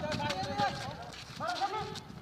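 Men's voices calling out during a street football game, with a quick series of low taps from running feet and the ball on pavement underneath. The calls fall in the first half-second and again about a second and a half in.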